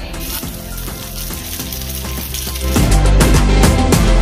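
A panko-breaded fish fillet sizzling in hot oil in a frying pan, the sizzle starting just after it is laid in. Background music plays throughout and gets much louder, with a heavy beat, near the end.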